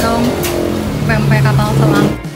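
Busy background noise: a motor vehicle running, under people's voices.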